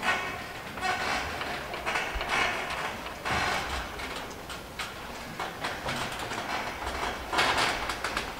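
Audience applauding, a dense clatter of clapping that swells and eases, loudest near the end.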